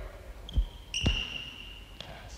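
A basketball dribbled on a hardwood gym floor: two low thuds about half a second apart. This is followed by a long, steady, high sneaker squeak on the floor.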